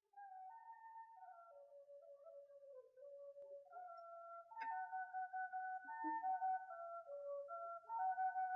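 A Thai khlui, a vertical duct flute, plays a slow solo melody of held notes with slides between them, growing louder about halfway through.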